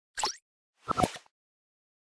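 Logo-intro sound effect: a brief bright swish, then two or three quick pitched pops about a second in.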